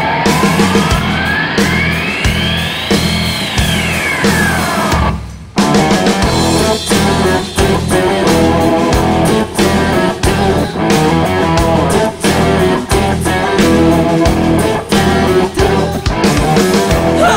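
Live rock band playing an instrumental passage on electric guitars, bass and drums. Over the first five seconds a high glide rises and then falls above the band. The music cuts out for a moment about five seconds in, then the full band comes back in with a driving beat.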